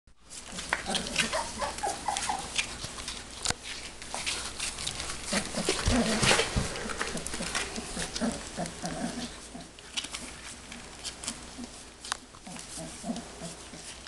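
Young Stabyhoun puppies making many short whimpers and grunts as they explore, over the crinkle and scratch of their paws on a plastic tarp.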